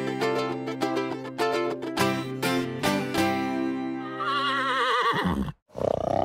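A short music jingle of quick plucked-string notes over a held chord. About four seconds in it ends in a horse's whinny, with a wavering, falling pitch, followed by a brief second burst.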